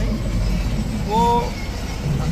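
Steady low rumble of road traffic and lorry engines under men's talk, with one drawn-out spoken word about a second in.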